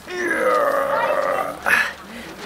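A man's drawn-out wordless vocal noise, about a second and a half long, sinking slightly in pitch, with a short sound right after it.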